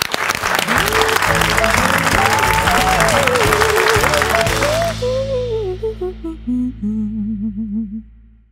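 Studio audience applause over the talk show's theme music, which has a gliding lead melody and steady low bass notes. The applause stops about five seconds in, and the music thins out and fades near the end.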